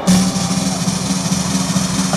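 Loud gabber/hardcore dance music over an arena PA, cutting in abruptly with a rapid drum roll over a steady held tone.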